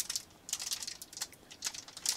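Foil wrapper of a trading card pack giving a scattering of short, soft crackles and clicks as fingers pick at its crimped top seal to tear it open.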